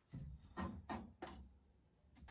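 Short-handled mini tubing cutter being turned around a copper pipe: four short, faint scraping strokes, each about a quarter second long.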